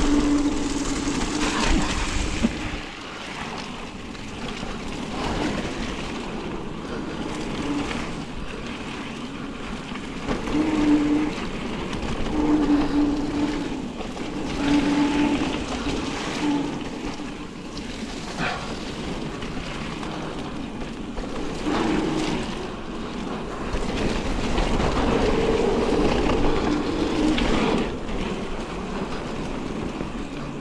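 Mountain bike riding down a damp dirt singletrack: tyre rumble on dirt, rattles and knocks as it goes over bumps, and wind on the microphone. Several short, steady buzzes come and go through the ride.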